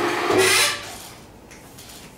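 Chalk scraping on a blackboard as symbols are written, strongest about half a second in, with a short voiced sound from the writer underneath; it dies down in the second half.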